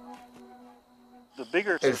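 Soft background flute music holding a low note, which dies away about a second and a half in.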